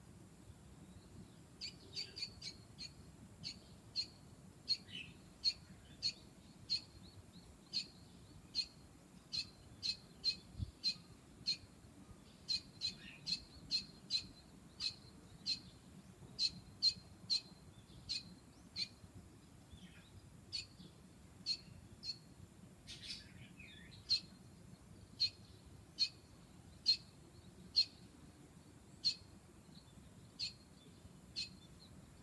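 Pet parakeets chirping: short, high single chirps repeated every half second to a second, with one longer, harsher call about two-thirds of the way through.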